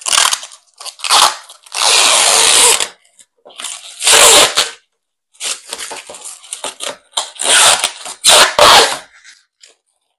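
Protective plastic film being peeled off a clear plastic sheet in a series of pulls, each a loud crackling tear, the longest lasting about a second from about two seconds in; a cool noise.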